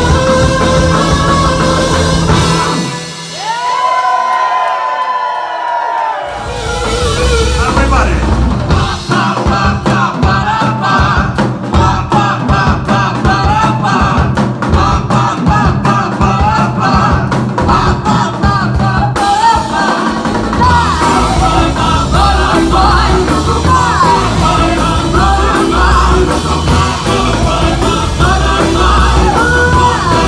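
Live rock band playing amplified electric guitar, contrabass balalaika, drums and keyboard, with singing and shouted vocals. About three seconds in, the bass and drums drop out for a few seconds and sliding pitched notes remain. A pared-down section driven by the beat follows, with overhead handclaps, before the full band comes back in about two-thirds of the way through.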